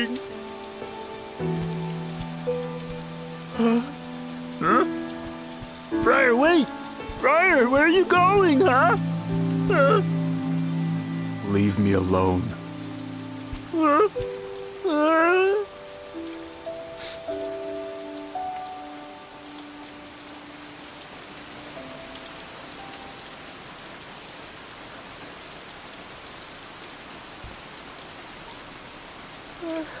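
Steady rain falling throughout, heard alone for roughly the second half. In the first half a character's wordless, wavering cries sound over sustained music notes.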